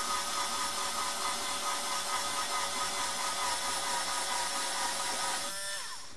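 Bosch IXO cordless screwdriver running steadily with a hex-shank wood drill bit as the bit is withdrawn from a freshly drilled hole in thick plexiglas. The motor's steady whine winds down and stops near the end.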